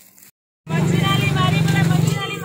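After a brief cut to silence, a loud steady engine hum starts abruptly with people talking over it.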